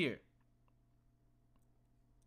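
A few faint computer-mouse clicks over quiet room tone with a low steady hum.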